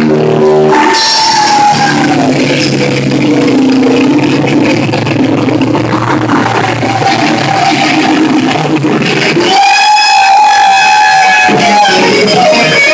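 Live rock band playing loudly, heard close to the stage. About three-quarters of the way through, the low end drops out and a single held high note carries on alone.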